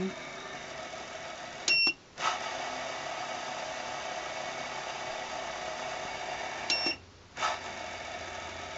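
Sangmutan 1100 W DC spindle motor on a Sieg mini mill running steadily at the 400 setting. Twice, about two seconds in and again near the end, its controller gives a short beep and the motor drops out for a moment and starts again, switching direction in the controller's tap mode.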